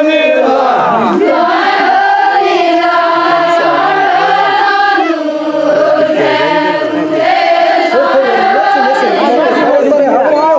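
A group of voices singing an Adivasi folk song together, holding long drawn-out notes with a brief break about halfway through.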